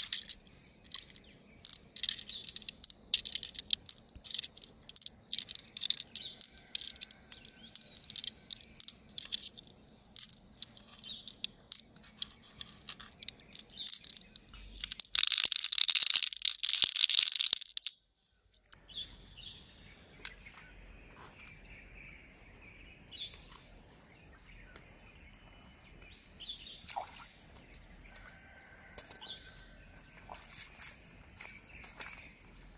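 Small hard pearl beads clicking against each other and against a large freshwater mussel shell as they are handled, building to a loud, dense rattle of beads pouring into the shell that cuts off sharply about 18 seconds in. After that come short bird chirps over faint outdoor background.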